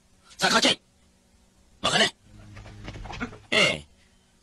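Three short vocal outbursts from a person's voice, each well under a second long, spaced about one and a half seconds apart. A quieter stretch of voice sound comes between the second and the third.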